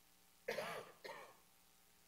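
A person clearing their throat, in two short, quiet sounds about half a second and a second in.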